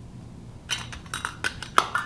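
Metal canning lid and screw band clinking against the rim of a glass mason jar as they are set in place: a quick run of sharp clicks starting just under a second in.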